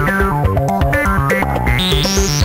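Electronic music played live on hardware: a Doepfer MS-404 analog synth bass line repeats quickly under stepped, falling runs of higher synth notes, with sharp percussive clicks in the rhythm.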